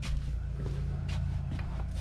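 Steady low electrical hum, with a few faint knocks and rustles as he handles things among the shelves and boxes.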